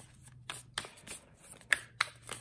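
A Light Seer's Tarot deck being shuffled overhand, cards slipping and tapping from one hand to the other in a run of soft, irregular rustles and clicks, the sharpest tap near the end.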